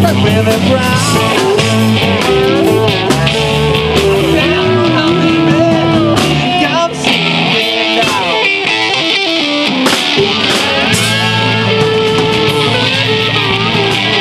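Live rock band playing, with a guitar line full of bent, sliding notes over bass and a steady drum beat.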